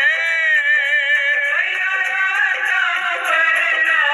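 Hindu devotional aarti song to Durga, a sung melody with instrumental backing and a steady percussion tick about four times a second.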